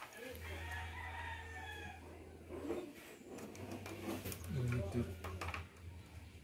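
A rooster crowing faintly in the background, one long drawn-out call in the first couple of seconds, over a low steady hum. A few sharp clicks of hard plastic toy parts being pushed together come later.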